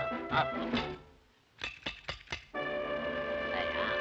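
1930s cartoon soundtrack: a short orchestral phrase laced with sharp hits, a brief pause, then a quick run of about five sharp percussive strikes, followed by a sustained orchestral chord.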